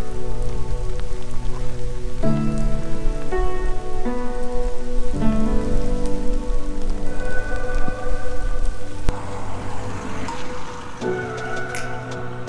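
Heavy rain pouring down, an even hiss, mixed under background music with long held chords. The music drops out for about two seconds near the end, leaving the rain on its own.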